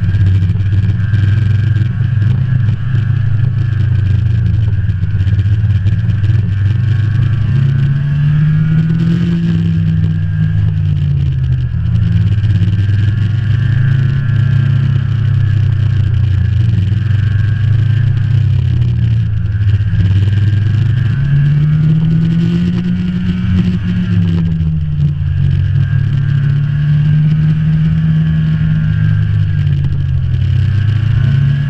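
Snowmobile engine running at speed along a trail. Its pitch rises and falls with the throttle, climbing and easing off about a third of the way in and again about two-thirds of the way in.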